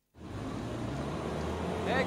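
Street background noise cutting in just after the start: a steady hiss over a low rumble, like distant traffic. A man's voice starts calling out at the very end.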